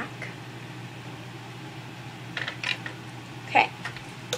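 A few light clicks and small rattles from handling makeup items, with one louder short sound about three and a half seconds in, over a steady low room hum.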